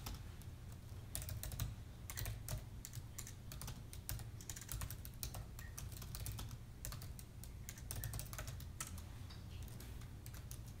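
Typing on an Apple MacBook laptop keyboard: quick, irregular runs of light key clicks with short pauses between them, over a low steady hum.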